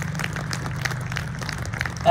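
Audience applause: a few people clapping, the claps separate and irregular, over a steady low hum.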